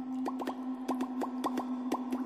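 Drops of water plopping into water in quick succession, about five a second, each a short rising plop, over a steady low droning tone.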